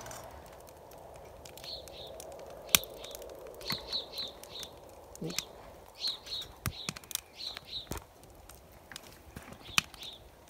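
A small bird chirping in short high notes, several quick chirps at a time in a few clusters, over a scatter of sharp clicks and ticks.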